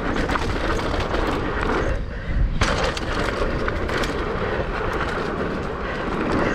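Mountain bike riding fast down a dirt singletrack, heard from a bike-mounted action camera: a continuous rumble of tyres and wind on the microphone, scattered with rattling clicks from the bike over bumps. The hiss dips briefly about two seconds in.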